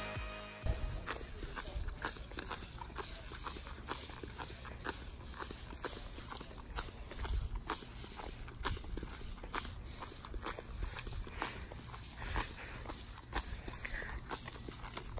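Rubber flip-flops slapping against heels and a concrete sidewalk with each step of a child walking, a quick, steady patter of slaps, over a low rumble.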